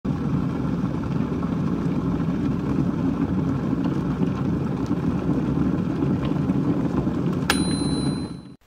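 A steady low noise, then a sharp high ding about seven and a half seconds in that rings on briefly.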